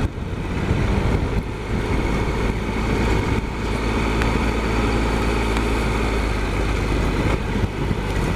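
Triumph Explorer XCa motorcycle's three-cylinder engine running steadily at low speed while the bike rolls along a grass track.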